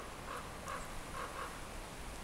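Faint bird calls: about five short notes in quick succession.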